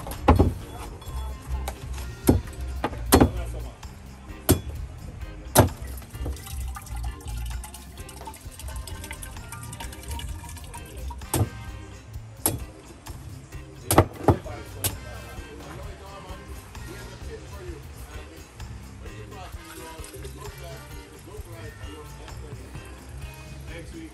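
Machete chopping into green coconuts on a wooden board: sharp, separate chops, several in the first six seconds and another cluster around 11 to 15 seconds in, over background music.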